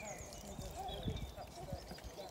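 Footsteps crunching on a gravel path, a few uneven steps in the middle, with distant voices and birds chirping behind.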